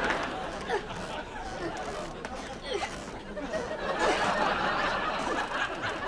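Studio audience laughing and chuckling, picking up again about four seconds in.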